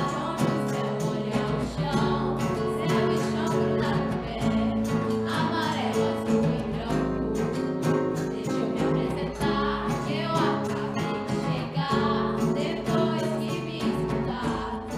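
Young girls singing together into microphones, backed by a strummed acoustic guitar and hand percussion: snare drum, conga and tambourine.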